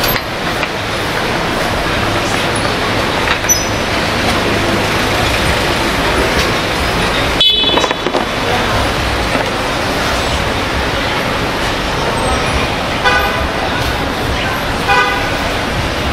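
Busy city-street traffic noise with a few short vehicle horn toots: one about halfway through and two more near the end.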